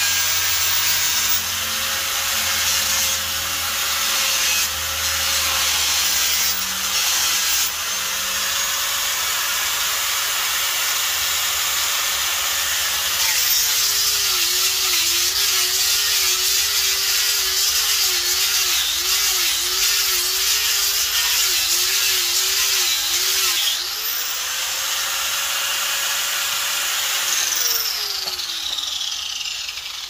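Angle grinder with a sanding disc running against an Arbutus wood walking stick, with a steady abrasive rasp over the motor whine. The whine drops and wavers under load through the middle, then rises again. Near the end the grinder winds down with a falling pitch.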